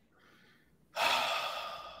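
A person sighing: a faint breath in, then about a second in a long breathy exhale that fades away.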